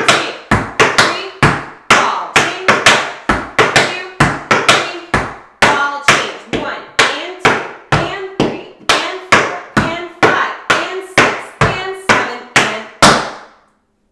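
Metal-tipped tap shoes striking a wooden tap board in a quick, even run of sharp taps: a beginner combination of flap heels, ball changes, paradiddles and a shuffle step heel, danced in continuous eighth notes. The taps stop shortly before the end.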